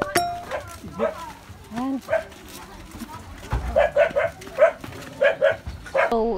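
A dog barking in short, quick runs: a burst of about four barks just before the middle and two more near the end.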